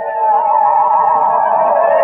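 Eerie background film music: a wavering tone with fast vibrato over held layered notes, swelling louder just after the start and with pitches gliding upward near the end.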